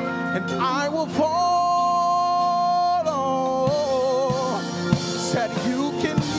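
Live gospel worship music: a singer holds a long wordless note over sustained keyboard and organ chords, the note going from steady to wavering partway through. Conga drums add a few hits near the end.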